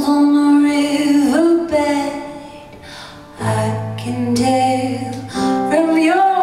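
A woman singing a slow song over piano, heard live from the audience, with long held notes. The music softens a little before halfway, then a low held string note comes in under the voice for about two seconds.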